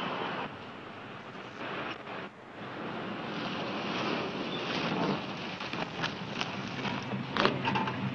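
Car engine and road noise as a patrol sedan drives along a winding road. The sound drops briefly about two seconds in, then builds and holds, with a few sharp clicks near the end.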